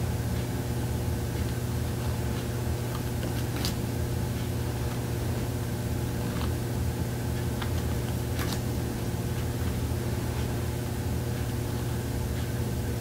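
Steady rushing noise and low hum of a central air conditioner running hard, with a few faint clicks of thin tarot cards being handled.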